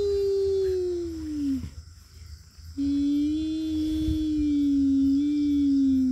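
Two long, drawn-out howls. The first is held, then slides down in pitch and breaks off about a second and a half in. After a short pause a second, lower howl starts and holds fairly steady, sinking a little as it fades near the end.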